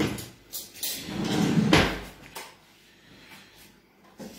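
Kitchen cutlery drawer being handled and pushed shut: a few knocks, then a rattling slide ending in a thump a little under two seconds in.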